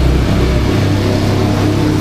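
Steady loud rumble with a hiss, its low hum stepping up in pitch about a third of the way in.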